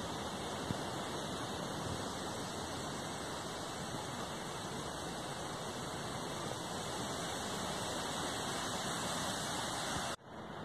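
Steady rush of a fast-flowing mountain stream, an even, unbroken wash of water noise.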